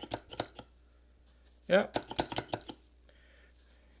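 A few quick light clicks as a rag is pressed down on the spring-loaded pump plate of an alcohol dispenser, drawing isopropyl alcohol up into the dish.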